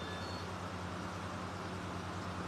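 A steady low hum with a haze of hiss, in a lull between phrases of background music.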